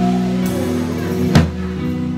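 A song with held bass notes and chords, and a drum kit played along with it. One sharp drum hit about one and a half seconds in is the loudest moment.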